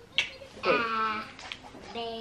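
A young child reciting the alphabet, naming the letters one at a time in a drawn-out, sing-song voice, with two sharp clicks, one just after the start and one about halfway through.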